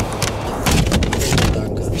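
Wind rumbling on the microphone, with rustling and knocking from the flimsy shelter.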